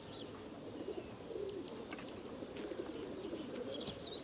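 Racing pigeons cooing in numbers in a pigeon transport truck, a steady, wavering murmur of overlapping coos, with short high bird chirps over it.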